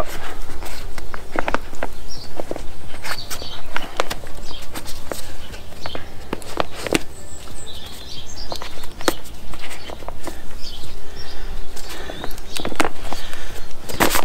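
Rustling and crinkling of a waterproof frame bag's roll-top closure as it is folded shut by hand, with scattered clicks from its straps and fasteners.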